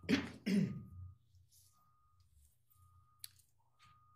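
A person clearing their throat in two short bursts. After that there is quiet room tone with a faint click about three seconds in.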